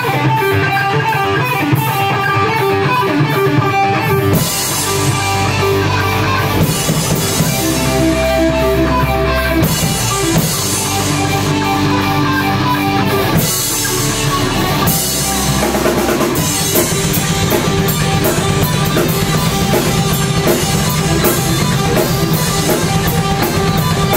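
Live rock band playing through Marshall amps: distorted electric guitars, bass and a drum kit. The arrangement shifts every few seconds, settling into a steady, driving drum beat about two-thirds of the way through.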